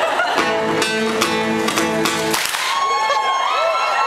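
Live band guitars, an acoustic guitar among them, play a short burst of rhythmic strummed chords that stops about two and a half seconds in. The crowd follows with whoops and cheers.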